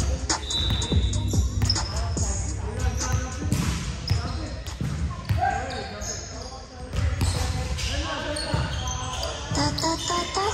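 Volleyball being struck and hitting a hardwood gym floor during a rally, a string of sharp impacts, with players' voices calling across the court.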